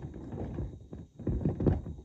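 Irregular knocks and scuffing from objects being handled close to the phone's built-in microphone, in two short clusters, the second louder.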